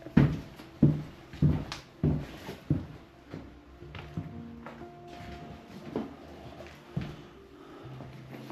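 Footsteps, sharp and evenly spaced about every 0.6 s for the first three seconds and then softer, under quiet background music of held notes.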